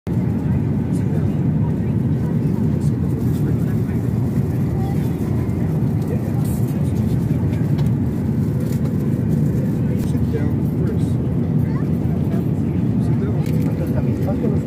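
Steady in-flight cabin noise of a jet airliner: a constant low rumble of engines and air rushing past the fuselage, with faint voices under it.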